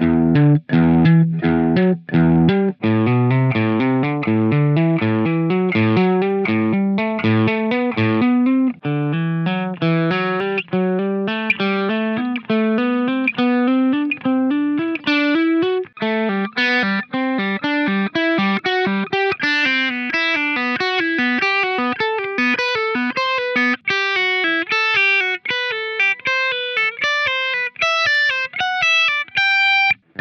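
Electric guitar playing legato exercise runs, quick single notes sounded by fretting-hand hammer-ons and, from about halfway, pull-offs. The runs climb steadily in pitch through the scale.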